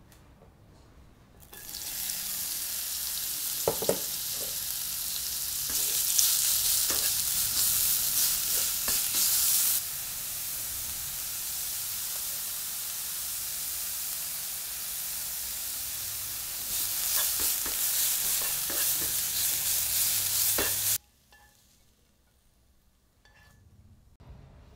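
Food stir-frying in oil in a pan: a steady sizzle that gets louder twice, with a few short knocks of the stirring utensil against the pan. It starts about a second and a half in and cuts off suddenly about 21 seconds in.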